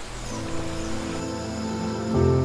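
Soft, slow ambient background music of sustained, layered tones, with notes coming in one after another so that it builds gently.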